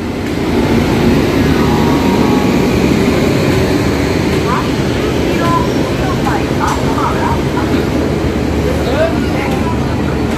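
Busy railway station platform: a steady, loud low rumble and hum of trains and the station, with snatches of distant voices midway and near the end.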